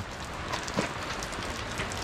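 Steady rain falling, an even hiss, with one light knock a little under a second in.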